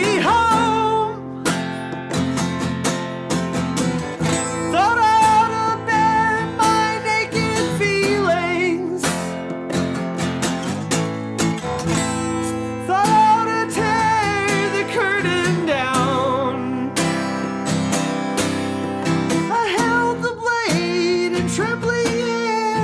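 Steel-string acoustic guitar strummed, with a man singing long, wavering held notes over it at intervals.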